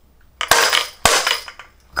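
A pair of furi-tsuzumi, Japanese dance hand drums, struck face to face twice, about half a second apart. Each hit is a loud crack followed by a short bright rattle of the small bells loose inside the drums.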